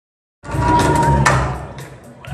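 Conga drums played in a quick, even rhythm, about four strikes a second, with a steady held tone under the first half. The sound starts abruptly and fades over the second half.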